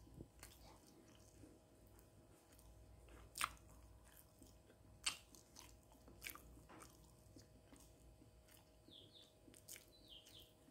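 Faint chewing and mouth sounds of someone eating stir-fried wild boar offal with rice, with a few short sharp clicks, the loudest about three and a half and five seconds in.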